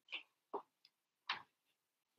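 Fingernails tapping on a smartphone's touchscreen: four light, irregular taps.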